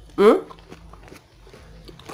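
A brief, appreciative 'hmm' from someone tasting food, then quiet with a few faint small clicks.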